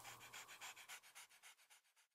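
Faint, rapid panting of a small dog, several quick breaths a second, fading out near the end.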